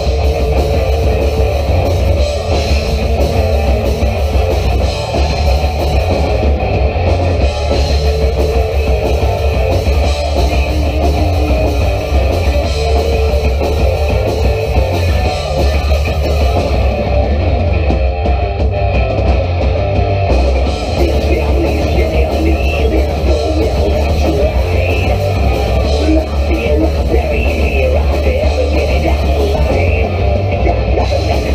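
Rock band playing live and loud: electric guitars, bass guitar and drum kit in a steady, dense wall of horror punk.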